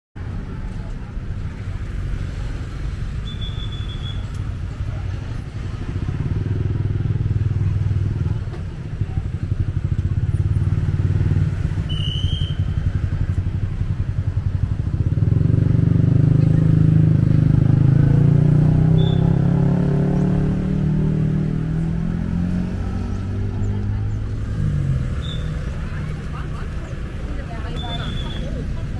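Outdoor street ambience: motorbike and car engines passing, loudest about halfway through, with people talking and a few brief high chirps.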